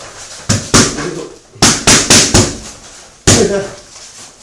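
Boxing gloves smacking focus mitts in kickboxing pad work: a quick double, then a fast run of four, then a single hard strike near the end.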